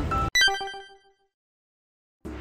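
Background music cuts off, then a single bright chime sounds, like a ringtone or bell, and fades away within about a second.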